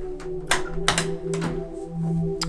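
Several sharp clicks and clacks in a small enclosed space from a home elevator's folding accordion gate and its latch being worked by hand, over background music.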